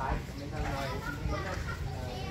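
People's voices talking in the background, indistinct, with no clear words.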